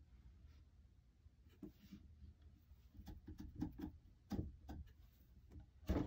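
Faint rustling and soft light clicks of hands winding whipping thread around the leather grip of a hickory golf club shaft and turning the shaft in its stand.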